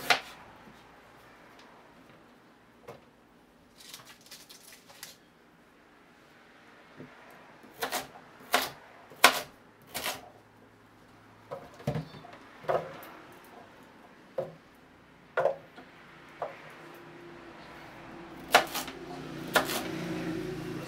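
Kitchen knife chopping ginger and carrots on a wooden cutting board: sharp single knocks of the blade through the root onto the board, at uneven intervals about a second apart, sometimes in quick pairs.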